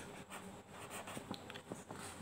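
A pen writing on paper: faint, short scratching strokes as a term is written out.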